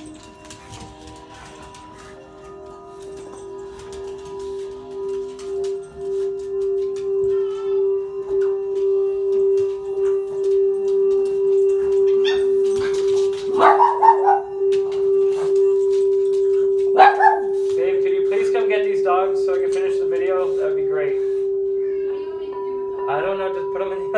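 Frosted quartz crystal singing bowl being rimmed with a mallet: one steady ringing tone that swells slowly from faint to loud. A dog barks over it in the second half, then gives a wavering howl near the end.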